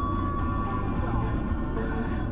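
Music from a car radio playing, with a voice over it.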